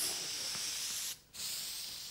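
Aerosol spray can hissing in two long sprays, with a short break a little over a second in.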